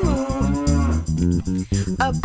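A cow's moo, one long call falling in pitch, over bouncy children's-song music with bass guitar and guitar.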